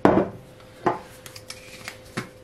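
Glass kitchen items knocked against a countertop: a sharp knock right at the start, a second one a little under a second later, then a few light clicks.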